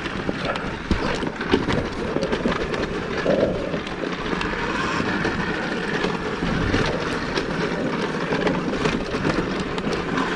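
Wind buffeting the microphone and the knobby tyres of a 2023 KTM Freeride E-XC electric dirt bike rolling over a rough dirt trail, with many small knocks and rattles from the bike as it goes over bumps.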